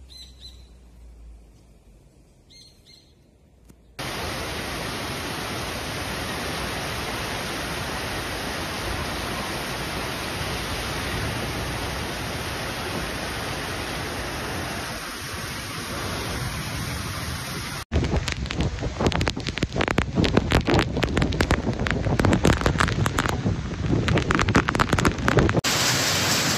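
Faint bird chirps, then a sudden cut to the steady hiss of heavy rain, and about fourteen seconds later a louder, gusting wind and rain with crackling wind buffet on the microphone.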